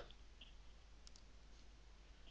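Near silence: room tone, with a couple of faint computer-mouse clicks.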